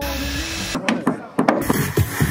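Construction noise while outdoor displays are built: a low hum at first, then irregular sharp knocks of tools on wood, with voices in the background.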